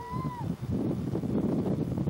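Wind rushing over the microphone and the rumble of a tour boat under way. In the first half-second comes one short high call that rises and then falls.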